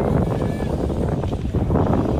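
Heavy wind buffeting on the microphone of a racing BMX bike at speed, a loud, rough rushing noise.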